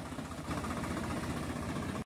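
Swaraj 855 tractor's three-cylinder diesel engine running steadily close by, with an even low rumble that gets a little louder about half a second in.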